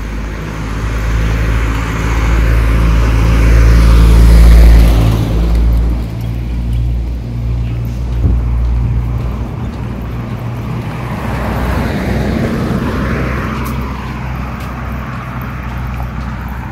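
Road traffic passing close by: a vehicle goes past with a swell of engine and tyre rumble peaking about four to five seconds in, and another goes by more quietly near twelve seconds, over steady traffic noise.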